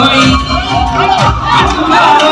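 A crowd shouting and cheering loudly over live band music with a drum beat.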